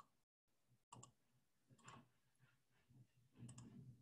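Near silence broken by a few faint, short clicks, spaced roughly half a second to a second apart.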